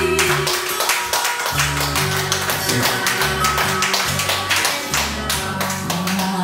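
Enka karaoke backing track playing an instrumental passage between sung lines: a steady beat over a bass line.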